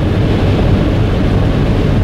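Steady road noise inside a car cruising at highway speed: tyre and engine noise with a low, even hum.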